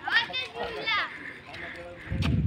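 Children's voices at play: a few short, high-pitched calls in the first second, then quieter.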